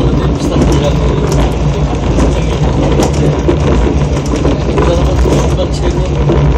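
Inside a moving CDC commuter diesel railcar: a steady diesel engine drone mixed with wheel-on-rail running noise.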